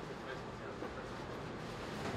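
Steady, low background hum and hiss of a restaurant kitchen, with no distinct events.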